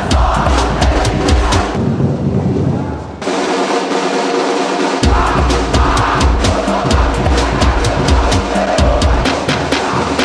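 A football supporters' drum section (bateria) playing live: bass drums and snares in a fast, steady rhythm. The bass drums drop out about two seconds in, leaving the snares alone, and come back in about five seconds in.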